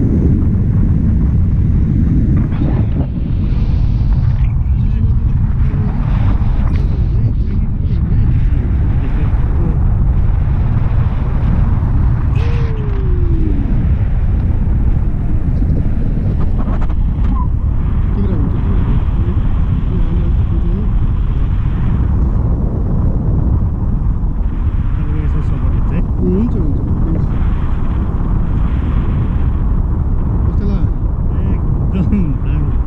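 Wind noise on the camera's microphone from the airflow of a tandem paraglider in flight: a loud, steady low rush.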